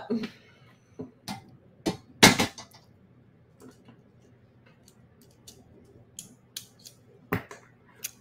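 Strand of beads being handled and opened, the beads knocking together in scattered small clicks and clinks, with the loudest clatter about two seconds in and another sharp click near the end.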